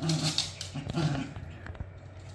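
Shiba Inu dogs growling in play while tugging on a toy: two short, gritty growls about a second apart, followed by a few light ticks.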